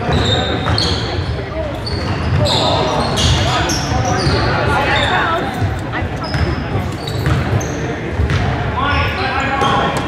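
Basketball play in a large gym: sneakers squeaking on the hardwood floor many times, the ball bouncing, and players and spectators calling out, all echoing in the hall.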